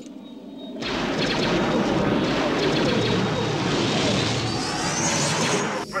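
Film sound effect of starfighter engines rushing low over the Death Star's surface: a dense, loud rush that swells in about a second in and holds, with a rising whine near the end.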